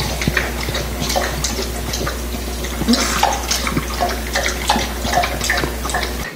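Saint Bernard puppy lapping water from a stainless steel bowl: irregular wet slurps and splashes of the tongue in the water.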